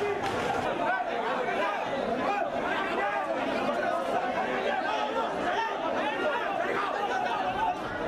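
Crowd chatter: many people talking and calling out at once, a dense babble of overlapping voices with no one voice standing out.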